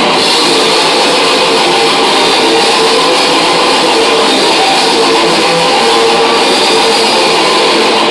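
Thrash metal band playing live at full volume: heavily distorted electric guitars, bass and drums in a dense wall of sound, the full band coming in at the very start.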